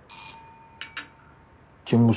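Doorbell ringing once: a bright ring that starts sharply and dies away over about a second, announcing a late-evening visitor at the door.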